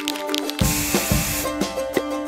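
A spray hiss sound effect, like an aerosol can, starting about half a second in and lasting about a second, over background music.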